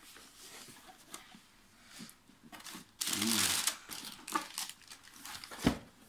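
Cardboard shoebox being handled and its lid worked off: cardboard rubbing and scraping, loudest for about a second halfway through, with light clicks and one sharp knock near the end.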